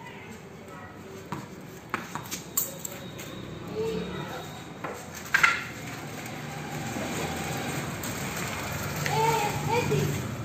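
A few scattered sharp knocks and clicks from a casual game of cricket on a tiled floor, the loudest about five and a half seconds in. People's voices can be heard in the background, clearest near the end.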